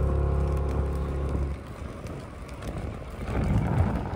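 Background guitar music holding a chord and fading out about a second and a half in, then a bicycle descending at speed: wind noise on the microphone and tyre noise, growing louder toward the end.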